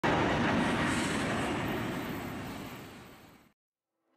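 Boeing 737 MAX's CFM LEAP-1B jet engines at takeoff thrust, a loud steady roar that fades away and cuts off just before the end.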